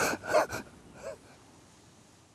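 A man crying: a few sharp, gasping sobbing breaths with a catch in the voice in the first half second, then a fainter sob about a second in, before the sound fades out.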